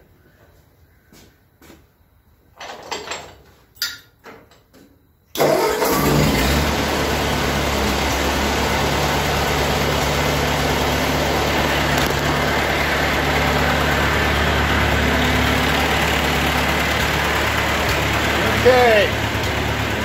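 Ford 8N tractor's four-cylinder flathead engine starting abruptly about five seconds in and then running at a steady idle. Before it, only a few faint knocks of handling.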